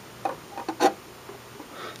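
A few short, light clicks and rubs of a plastic action figure being handled and fitted onto a bent wire coat-hanger stand, most of them in the first second.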